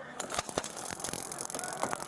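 Irregular clicks, knocks and rattling from a body-worn camera and the wearer's gear jostling as the officer moves in, over a steady noise that grows louder.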